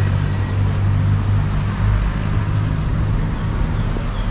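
Road traffic: a motor vehicle's engine drones steadily and low close by, over the general rush of the street.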